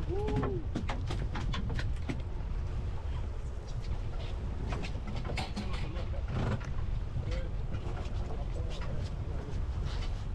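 Steady low rumble of wind and sea around a small boat, with scattered clicks and knocks throughout and brief muffled voices near the start.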